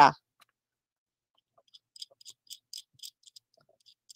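A run of faint, quick clicks and ticks starting a little under two seconds in and lasting under two seconds: small handling sounds of a pearl vise being loosened by hand to free a freshly drilled bead.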